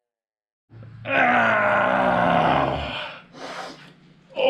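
A man's loud, strained yell, starting about a second in and held for about two seconds, followed by a short breathy burst near the end.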